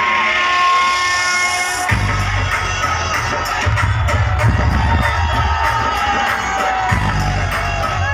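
Loud DJ music from a street sound system. About two seconds in, a rising build-up gives way to a heavy, pounding bass beat.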